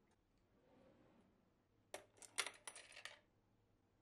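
A quick clatter of small, hard clinks and clicks, such as kitchenware or utensils being handled. It begins about two seconds in and lasts about a second.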